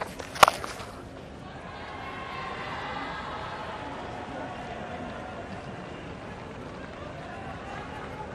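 A single sharp crack of a cricket bat striking the ball about half a second in, followed by the steady murmur of a stadium crowd that swells slightly a couple of seconds later.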